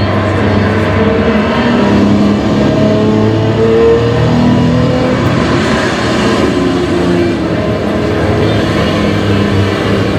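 Ferrari 250 GT SWB's 3-litre Colombo V12 running and revving as the car is driven, its pitch rising and falling with the revs. It is heard from a film played over the loudspeakers of a large hall.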